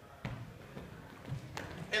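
Sneakers scuffing and tapping on a wooden dance floor as two dancers scoot sideways together, with a few sharp taps about a quarter second in and near the end.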